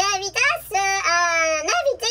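A high-pitched, child-like voice speaking a few syllables, then drawing out one long vowel for about a second, almost sung.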